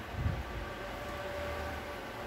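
Steady low background noise with a faint steady hum, and one soft low thump near the start.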